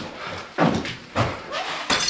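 Four heavy thuds, evenly spaced about every half second.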